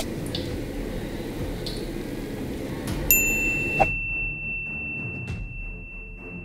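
A bright ding about three seconds in whose single high tone rings on steadily to the end, over low background music.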